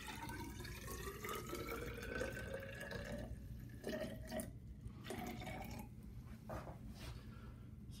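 Water poured into a tall plastic graduated cylinder, its pitch rising steadily as the column fills for the first three seconds or so. It then turns to a few short trickles as the pour is eased toward the measured volume.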